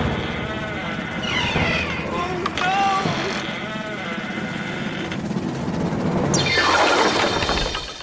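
Effect-distorted cartoon soundtrack: warbling, pitch-gliding voice-like cries through the first half, then a loud hissing, crash-like sweep near the end that cuts off just before the close.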